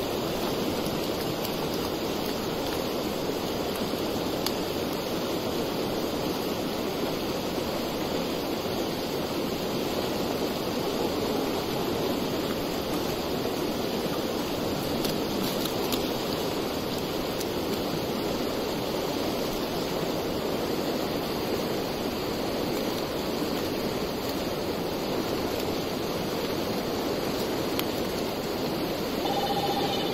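Steady rush of flowing floodwater, an even noise with no breaks or changes.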